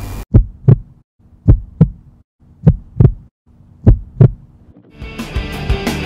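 Heartbeat sound effect: four double thumps (lub-dub), about one every 1.2 seconds, over a faint steady hum. Music starts about five seconds in.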